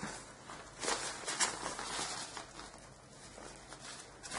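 Faint rustling and scuffing of a fabric drawstring bag being unfolded and handled, a series of soft rustles that die down about three seconds in.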